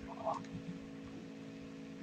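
Quiet room tone with a faint, steady electrical hum from the meeting room's sound system, and a faint short sound about a quarter second in.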